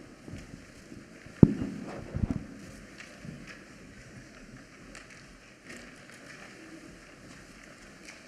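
Handling noise at a wooden pulpit picked up by its microphone: one sharp knock about a second and a half in, then a few quick thumps, with soft footsteps and shuffling as a person steps up to it.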